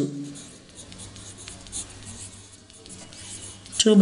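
Pen writing on paper: a run of short, light scratching strokes.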